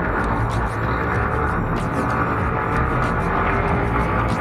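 Motorcycle engine running at a steady cruise, with road and wind noise. The rider finds it smoother and less vibrating since an Uma spark plug and ignition coil were fitted. Background music plays over it.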